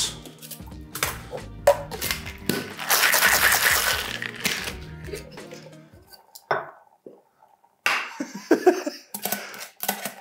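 Metal cocktail shaker tins and a jigger clinking and knocking as they are handled, with a longer noisy stretch about three seconds in, over background music.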